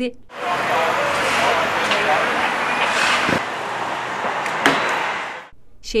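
Street noise: a car driving slowly past close by, with voices of people talking. Two sharp knocks come about halfway through and again a little later.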